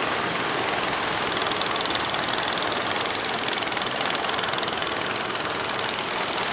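Boat engine running steadily, with a fast, even pulsing.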